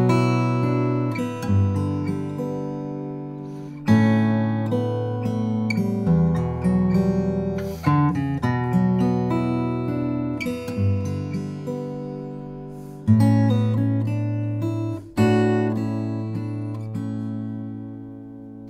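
Acoustic guitar played fingerstyle: picked arpeggios with a melody woven in, through a B minor progression of Bm add11, G, A and Em add9. A new chord starts sharply every few seconds and rings out, fading, until the next.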